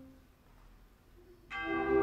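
Symphonic wind band: a held chord dies away into a near-silent pause of about a second, then the band comes in again suddenly with a full sustained chord, brass to the fore.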